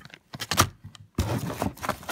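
Handling noise as a plastic bag, cables and a plug-in camera battery charger are moved about in a cardboard box: irregular crinkles, rattles and light knocks. There is a sharp cluster about half a second in and busier rustling from just over a second.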